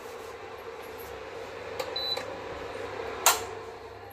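A steady electrical hum, with one short high electronic beep about two seconds in and a sharp click about a second later, as an electric kitchen appliance is switched off.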